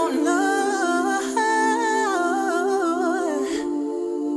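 R&B song passage of wordless hummed vocal melody, gliding up and down over sustained layered harmony chords, with no drums. The melody line stops shortly before the end while the chords hold.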